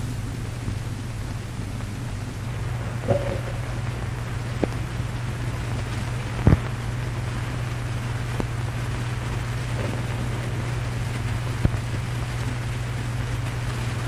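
Noise of an old film soundtrack: a steady low hum under hiss, with scattered clicks and pops, the loudest about halfway through.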